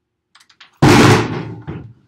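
A hard slam on a table about a second in, loud and sudden, dying away over most of a second. A few light knocks and clicks come just before it.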